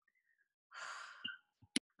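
A woman's audible breathy exhale, like a sigh, lasting about half a second, followed by a single sharp click shortly before the end.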